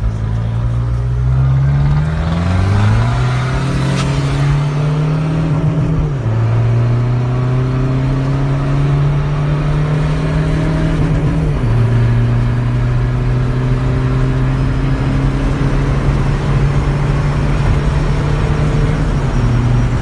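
Opel Corsa C 1.7 DTI turbodiesel, tuned with a hybrid turbo and a straight-pipe exhaust, heard from inside the cabin. The engine note rises steeply over the first few seconds under acceleration, then settles into a steady drone that steps down a little about six and about eleven seconds in.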